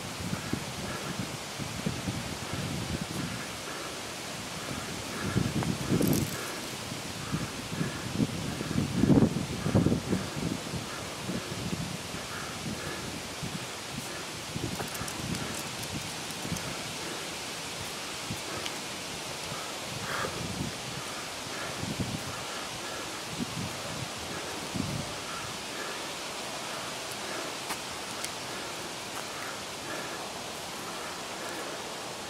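Steady outdoor ambience of wind and rustling leaves, with a few louder low rumbles, the loudest about nine seconds in.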